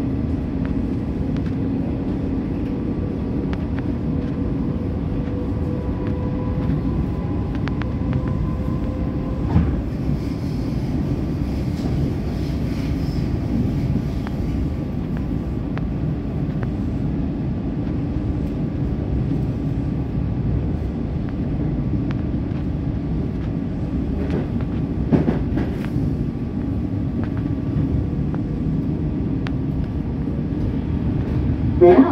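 EDI Comeng electric suburban train running, heard from inside the carriage: a steady rumble of wheels on rails with a humming tone from the traction motors. Sharp clacks come over rail joints or points about ten seconds in and again about twenty-five seconds in.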